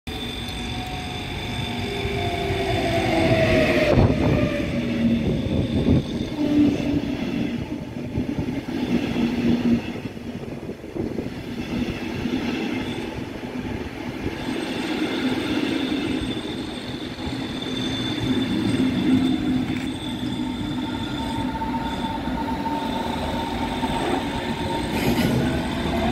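Electric locomotive hauling a regional train of double-deck coaches past at close range. The locomotive's whine slides down in pitch as it passes, loudest about four seconds in, and is followed by the long steady rumble of the coaches rolling by.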